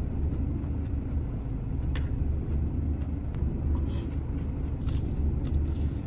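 Steady low rumble of an idling diesel truck engine, heard inside the cab. A few faint clicks of chopsticks against a plastic salad tub come about two, four and five seconds in.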